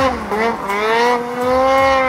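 Snowmobile engine revving high under throttle as the sled ploughs through deep powder; its pitch climbs about half a second in, then holds steady.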